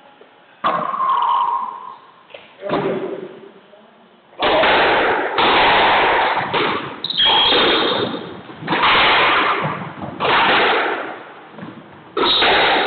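Squash rally: the ball is struck by racquets and hits the court walls about once a second, each hit loud and echoing in the court. Two quieter knocks come in the first few seconds, before the rally gets going.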